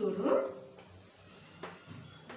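A brief voice-like call at the start, then faint taps of chalk writing on a blackboard.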